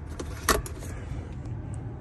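A pickup truck's centre console lid being unlatched and lifted open: one sharp latch click about half a second in, with a couple of fainter clicks around it.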